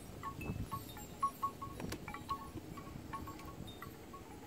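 Bamboo wind chime stirred by the breeze: a dozen or so short, hollow knocking tones at irregular intervals.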